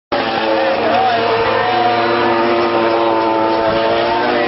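Racing motorcycle engines running at high revs, several engine notes overlapping and wavering in pitch, over the chatter of a trackside crowd.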